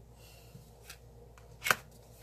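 Plastic scraper card scraping stamping gel polish across a metal nail-stamping plate: a faint rasp shortly after it starts, a light click, then one loud, sharp scrape near the end.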